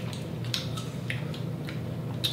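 People chewing juicy fruit (watermelon and other cut fruit), with a few short wet mouth clicks and smacks over a steady low hum.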